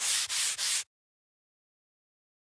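Chalk scratching across a chalkboard in about three quick, scratchy strokes, as if writing a word, stopping abruptly about a second in.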